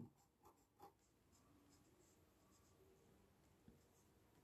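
Near silence, with the faint scratch of a pen writing on notebook paper.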